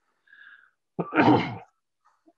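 A single sudden, loud sneeze about a second in, picked up through a video-call microphone.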